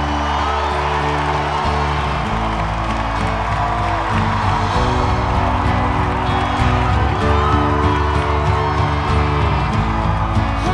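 Film-trailer music: held chords over a deep bass that change every couple of seconds, with guitar, and faint crowd cheering underneath.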